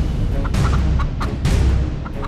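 A rooster clucking in a quick run of short calls over a low background music score.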